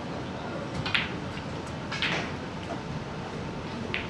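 A snooker shot: a sharp click about a second in as the cue strikes the cue ball and it hits the blue, then a second knock about a second later, and another short click near the end, as the blue is potted and the cue ball runs to the cushion. A low crowd murmur continues underneath.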